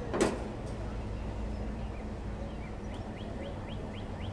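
A forklift engine running steadily under a single sharp clank about a quarter second in, as the steel frame is lowered onto the flatbed. In the second half comes a run of short rising chirps, about three a second.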